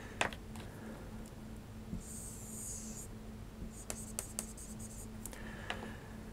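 Marker pen scratching on a whiteboard as a lamp symbol is drawn: one longer stroke about two seconds in, then a quick run of short strokes, with a few light taps of the pen tip.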